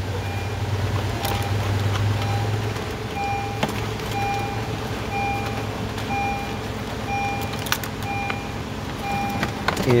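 A car's electronic warning chime beeping steadily, about one and a half short beeps a second, with the door standing open. Underneath is a low hum and a few light clicks of the plastic connector being handled.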